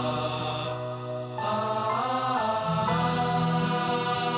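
Background score: a held, chant-like vocal line over a steady low drone, its notes shifting and gliding about a second and a half in.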